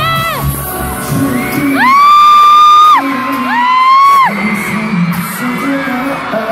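Live K-pop concert music with singing, overlaid by a fan close to the microphone screaming two long, high shrieks around the middle. The shrieks are the loudest thing heard.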